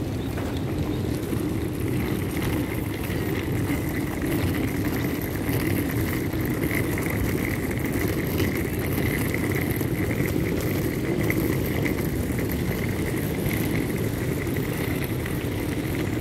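Steady rumble of a wheeled suitcase being pulled over asphalt, its wheels running continuously without a break.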